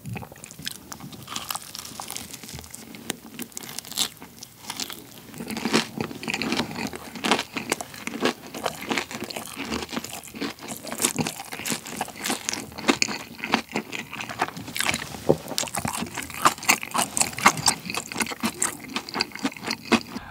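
Close-miked chewing of a seasoned fried chicken drumstick's meat, pulled off the bone in one bite, with many short crunches of the crispy fried coating and wet mouth sounds.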